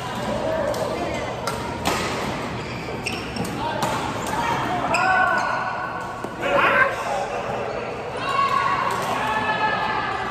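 Badminton rackets hitting a shuttlecock in a rally: sharp, scattered hits echoing in a large hall, with players' voices around the court.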